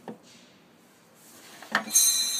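Handling noise: a light click, then a hiss that builds up and two sharp knocks near the end as the camera and the things on the box are moved about.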